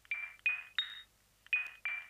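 An HTC Touch 3G phone's speaker playing its short ringer preview chime as the side volume key is pressed: a quick three-note rising figure, heard once and then starting again.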